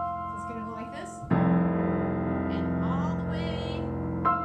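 Grand piano: a chord rings out and fades, then about a second in a loud low chord is struck and held, ringing with many overtones.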